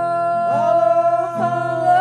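A woman singing a long held note, scooping up into it twice, over a strummed acoustic guitar.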